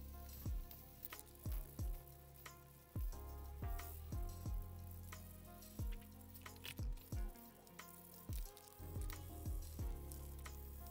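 Background music with a low, uneven drum beat, over the faint rasp of wet-and-dry sandpaper rubbing on a cast epoxy resin and wood pendant.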